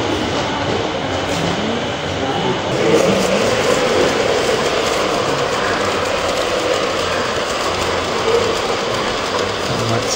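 LGB G-scale model trains running on the layout's track: a steady rolling noise of wheels on rail, getting louder about three seconds in as a locomotive and its wagons pass close by.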